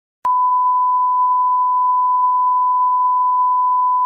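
A single steady electronic test tone, one unbroken beep at an even pitch, switched on with a click just after the start. It is the kind of reference tone laid under a film countdown leader.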